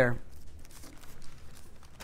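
Pages of a large Bible being turned by hand: a run of soft paper rustles.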